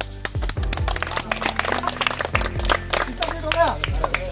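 A group of people clapping by hand for about three and a half seconds, over background music with a steady beat and low thumps; a voice comes in near the end.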